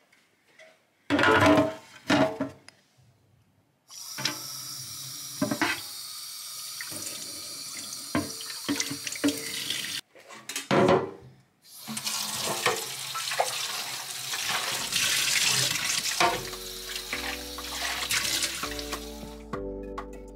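Tap water running into a stainless steel sink while clear plastic fridge shelves and a drawer are rinsed and scrubbed with a dish brush, with loud plastic clatters against the sink about a second in and again about halfway through. Music comes in under the water in the last few seconds.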